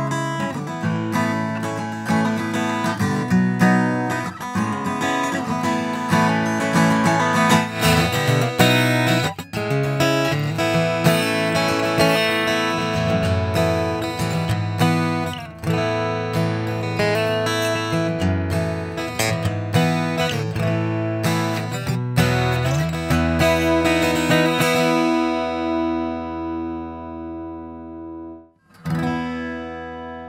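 Taylor 814ce Sitka spruce and rosewood grand auditorium acoustic guitar played fingerstyle, first heard through a studio microphone and later through the guitar's own pickup line signal. Near the end a final chord rings out and fades, then after a brief cut a Furch Red Master's Choice acoustic guitar begins playing.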